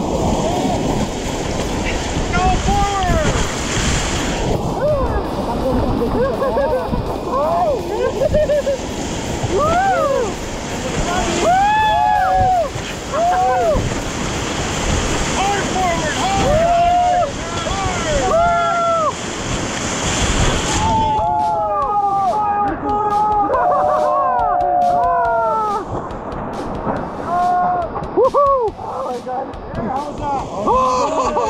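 Whitewater rapids rushing and splashing against an inflatable raft, with a melodic music track laid over it. The water noise cuts off suddenly about two-thirds of the way through, leaving the music.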